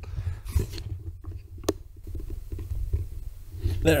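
Low, steady rumbling of wind and handling noise on a handheld camera's microphone, with a couple of short rustles about half a second in and a brief sharp sound near the middle.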